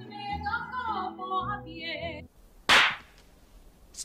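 A woman singing opera over orchestral backing music, which stops a little past two seconds in. A short whoosh follows a moment later.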